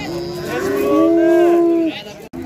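A calf mooing once: one long call of about a second and a half, its pitch dropping slightly as it ends.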